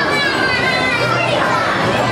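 Children's high-pitched voices calling out over a steady background of crowd chatter.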